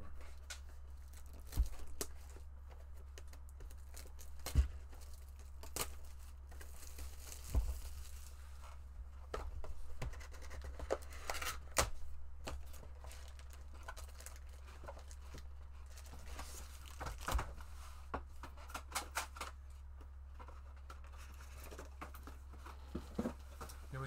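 A 2019-20 Upper Deck Allure hockey card box being unwrapped and opened: wrapper tearing and crinkling in stretches, with scattered sharp taps and knocks as the box and packs are handled. A steady low hum runs underneath.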